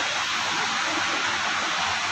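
Steady hiss of background room noise, even and unchanging, with no speech.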